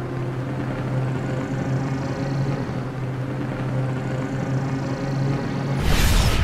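Cartoon energy-blast sound effect: a steady low hum under a rushing noise while the energy ball charges, ending in a sudden loud blast just before the end.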